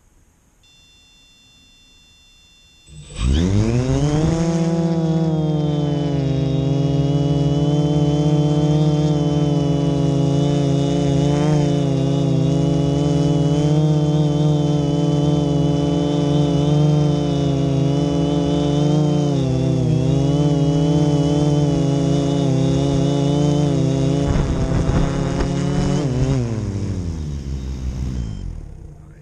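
Rebuilt HMF U580 multirotor drone's electric motors and propellers spinning up suddenly with a rising whine, then holding a steady, many-toned buzz with small pitch wobbles in flight. Near the end the motors wind down in falling pitch as the drone lands and disarms. Faint high electronic tones come just before the spin-up.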